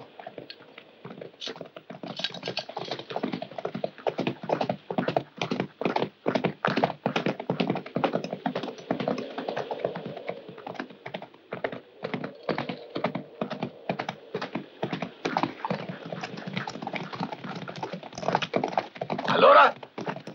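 Horses galloping: a rapid, uneven run of hoofbeats on dry ground, starting about two seconds in.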